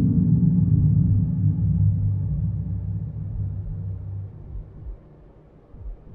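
A low, dark soundtrack drone of several steady low notes. It is loudest in the first two seconds and fades out by about five seconds in.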